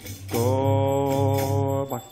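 Kirtan chanting: a voice holds one long, steady sung note from shortly after the start until just before the end, over a steady low drone.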